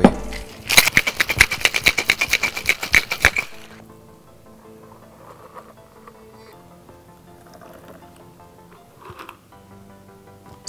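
Metal tin-on-tin cocktail shaker knocked shut, then shaken hard with ice rattling inside in fast, even strokes for about three seconds. Soft background music follows.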